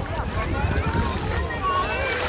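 Wind rumbling on the phone's microphone under the chatter of many distant voices on a busy beach, with light sounds of water around a swimming child.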